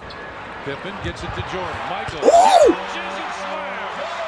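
Sound from basketball dunk highlight footage: game and arena noise, with a voice giving one drawn-out exclamation that rises and falls in pitch a little past halfway, the loudest moment.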